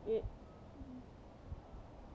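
A boy's voice saying a single word, then a pause with a short, faint low hum, two soft low bumps and faint background noise.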